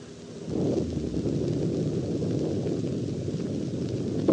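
Saturn V first stage's five F-1 rocket engines firing on a static test stand: a deep, steady rumble that comes in about half a second in and holds.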